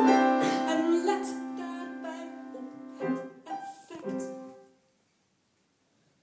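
Music of female singing with piano: a long held note fades away over about three seconds, a few shorter piano notes follow, and the music stops for about a second and a half near the end.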